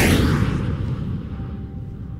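An edited-in cinematic sound effect: a falling whoosh that lands in a deep boom right at the start, its low rumble slowly dying away.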